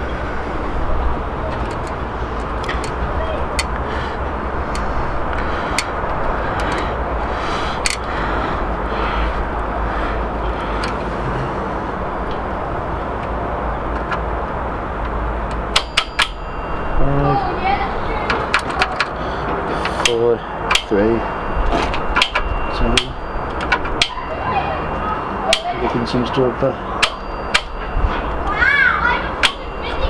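Steady rumbling outdoor background noise with scattered sharp clicks. From about halfway in, distant children's voices come and go among further clicks.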